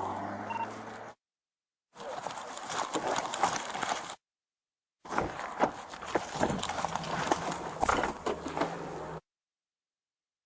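Hurried footsteps with the rattle and jangle of a police officer's duty-belt gear and body-camera handling noise as he runs to his patrol car and gets in. The audio drops out to dead silence three times, near the start, about halfway through, and for the last second.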